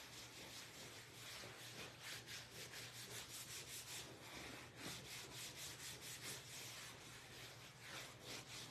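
Faint, quick back-and-forth rubbing of a textured applicator sponge on a leather chair's upholstery, working conditioner into the leather in short, even strokes.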